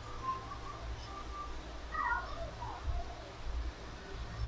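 Faint animal calls in the background: a few short pitched calls, with one longer curved call about two seconds in, over a steady low hum.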